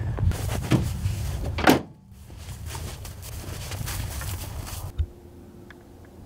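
Rustling handling noise with a sharp knock just before two seconds in, then a quieter rustle and a single dull thump near five seconds.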